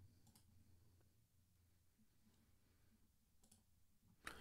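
Near silence: room tone with a few faint, short clicks.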